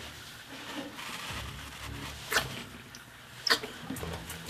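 Faint rustling from a gloved hand reaching into a gecko enclosure, with two short sharp clicks, one a little past halfway and one near the end.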